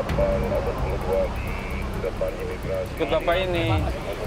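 Indistinct men's voices talking in the background over a steady low rumble of a vehicle engine or street traffic.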